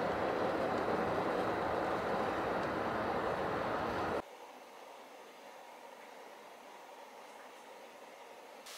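Steady road and engine noise heard inside a car's cabin while driving through a road tunnel. About halfway through it cuts off suddenly to a faint room tone.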